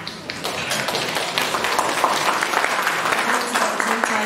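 An audience applauding, the clapping swelling about half a second in and carrying on steadily.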